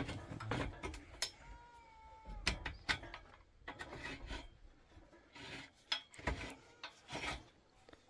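Threaded collar nut of an adjustable steel shoring prop being turned by hand: irregular metal clinks and knocks as the steel bar through the nut strikes the nut and tube, with scraping of steel on the thread between them. A brief squeal about two seconds in.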